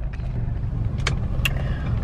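Car cabin road noise: a steady low rumble from the engine and tyres of the moving car, heard from inside. A couple of brief clicks come a little past the middle.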